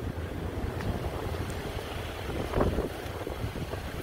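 Wind buffeting the phone's microphone outdoors: a steady low rumble with a hiss above it, and a stronger gust about two and a half seconds in.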